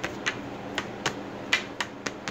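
Close-up eating sounds: a string of about six short, irregular mouth clicks and smacks from chewing pasta.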